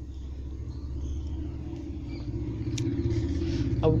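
A steady low rumble that slowly grows louder, with a couple of faint clicks near the end.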